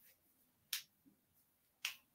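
Near silence broken by two short faint clicks, about a second apart.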